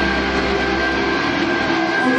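Live rock band's amplified guitars and bass sustaining a loud, ringing chord. A low drone underneath cuts out near the end.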